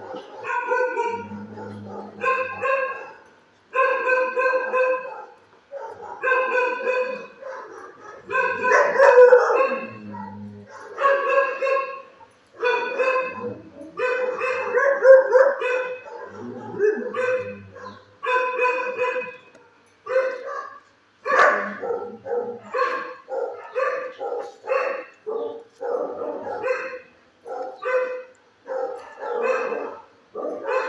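A dog barking over and over in a shelter kennel, each bark on about the same pitch. The barks come about once a second at first, then shorter and quicker from about twenty seconds in.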